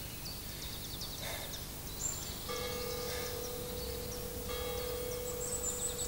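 Birds chirping, with a bell tone entering about two and a half seconds in and holding steadily. Its overtones swell twice.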